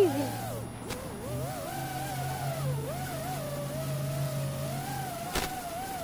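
Electric motors and propellers of radio-controlled aircraft whining in flight, the pitch wandering up and down with throttle, over a steady low hum. A single sharp click about five seconds in.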